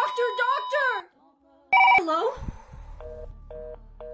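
A steady electronic beep tone under shouted speech stops about a second in, followed by a short telephone ring. After a spoken 'Hello?', a low hum and a pulsing two-note telephone busy signal sound about twice a second.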